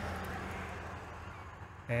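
Faint low engine-like hum with a steady drone, slowly fading away.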